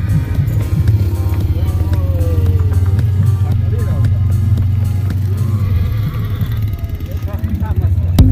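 Small motor rickshaw engine running steadily, heard from inside the cab, with music and voices over it.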